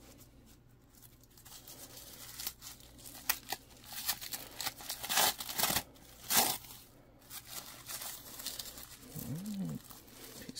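Strong adhesive tape being peeled and torn off a flat package of sheets, in rough ripping bursts that build from about two seconds in, loudest around five and six seconds, with crinkling of the plastic and paper packing.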